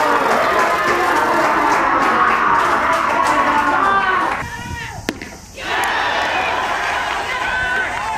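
Crowd of spectators shouting and cheering at a baseball game, many voices at once. It drops away briefly about halfway through, with one sharp click, then picks up again.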